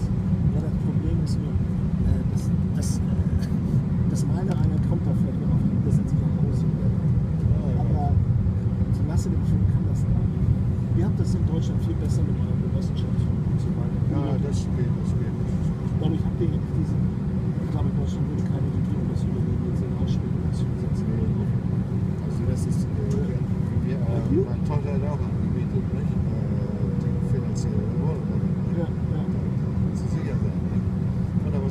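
Steady low rumble inside an airliner cabin as the plane taxis, with a faint murmur of passengers talking.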